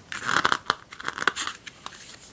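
Paper pages of a softcover booklet being flipped through, a quick run of crisp rustles and small snaps that fades out near the end.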